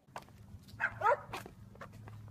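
Footsteps on a paved driveway, a few separate scuffs and taps, with a short, high, squeaky cry about a second in.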